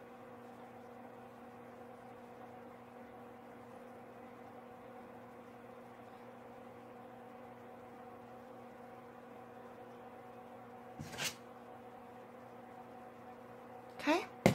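Quiet room tone: a faint, steady low hum with a few fixed tones, broken once near the end by a short, sharp sound.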